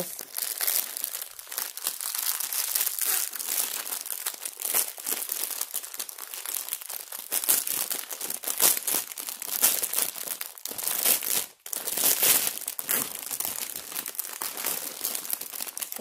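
Clear plastic packaging around bags of diamond painting drills crinkling and crackling as it is handled and unwrapped, with a brief pause about eleven seconds in.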